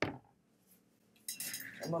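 A sharp knock right at the start, then about a second of quiet, then light clattering and rustling as a person gets up from a chair at a table and handles the furniture.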